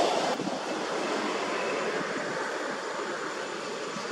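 Steady rushing outdoor noise, slightly louder in the first half-second and then even, the kind made by wind through forest trees and on the microphone.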